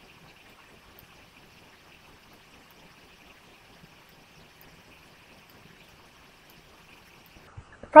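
Faint steady hiss of room tone and microphone noise, with a few very faint ticks.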